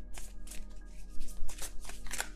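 Tarot cards being shuffled by hand: a run of irregular quick snaps, several a second, over soft background music.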